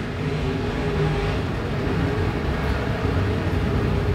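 A field of IMCA Modified dirt-track race cars' V8 engines running at speed around the oval, blending into a steady drone.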